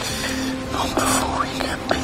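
A man whispering a short line softly over quiet, sustained background music.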